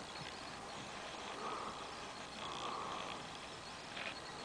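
Faint outdoor background at night: a low steady hiss with a few soft, indistinct sounds.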